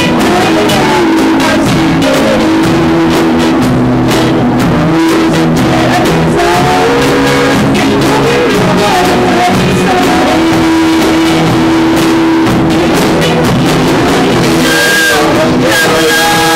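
Live band performing a song: three women singing lead together over electric and acoustic guitars and a drum kit, loud and steady. The voices come in brighter and higher near the end.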